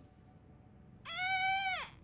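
An infant gives one short wailing cry about a second in, holding its pitch and then falling away at the end.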